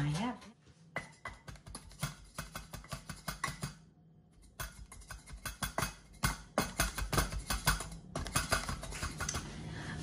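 Light, irregular taps and knocks of a wooden tamper pressing crumbly biscuit bases into the cups of a metal mini-muffin pan, with a short pause a few seconds in.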